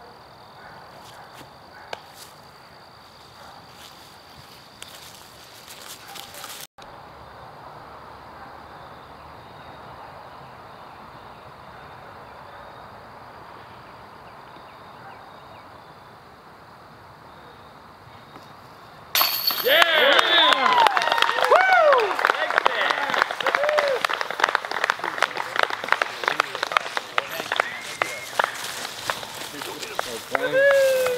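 Quiet outdoor ambience with a faint steady insect-like tone. About two-thirds of the way through, a disc clatters into the metal chains of a disc golf basket, and a crowd cheers, whoops and claps loudly through to the end: a long putt made.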